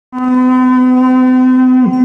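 A male bhajan singer holds one long, steady, loud note through a microphone and PA system. Near the end it breaks into a downward-bending ornament.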